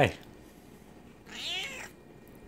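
A Bengal cat meowing once, about a second and a half in: a short, high call that falls in pitch.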